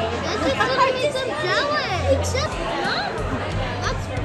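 Children's high-pitched voices and background chatter in a busy restaurant, with music playing underneath.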